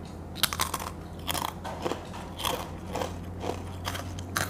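Crispy fried peyek cracker, coated in salted egg, being bitten and chewed: a string of irregular crisp crunches, roughly two a second, over a faint steady low hum.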